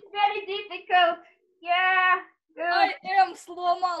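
A high voice singing or vocalising without words in short pitched notes, with one longer held note near the middle, heard over a video call.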